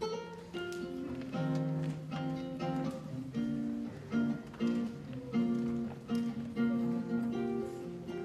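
Solo acoustic guitar played by hand, a steady run of single plucked notes and chords that each ring and fade.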